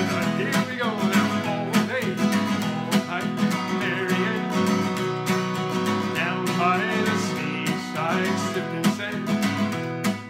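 Acoustic guitar strummed in a steady calypso rhythm, an instrumental passage with no singing.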